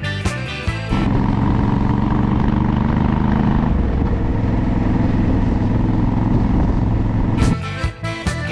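A motorcycle engine running steadily at road speed, heard from on board, its pitch dropping a little about halfway through. Background music plays for about the first second and cuts back in near the end.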